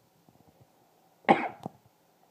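A person coughing: one sharp cough followed by a shorter second one.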